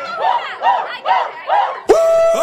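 Nightclub crowd shouting in short, repeated bursts about every half second while the DJ has the music cut out, in answer to a call to make some noise. The music slams back in with a loud hit near the end.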